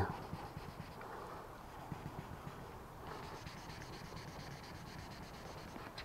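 Faint back-and-forth rubbing of 1500-grit sandpaper on a short wooden stick, worked lightly over cured clear coat to level a raised spot over a repaired solvent pop.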